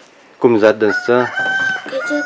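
A rooster crowing: one long, steady, held call that starts just over a second in and carries on past the end.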